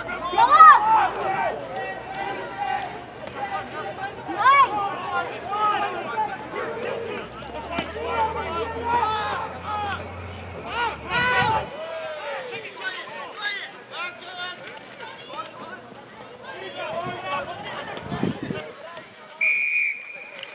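Indistinct shouting from rugby players and sideline spectators, with a short, steady blast of a referee's whistle just before the end.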